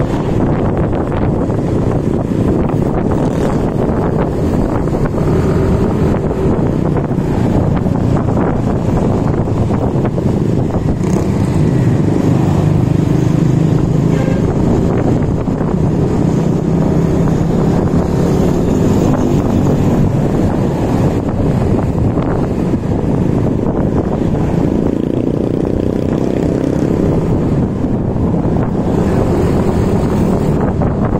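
Motor scooter riding steadily through traffic, its engine running under a constant low rumble of wind buffeting the microphone.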